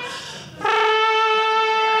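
A man's voice holding a long, steady, horn-like note into a microphone. It is broken at the start by a quick breath, and the note picks up again about two-thirds of a second in.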